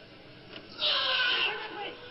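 A loud raised voice that starts suddenly just under a second in, eases off, then breaks briefly.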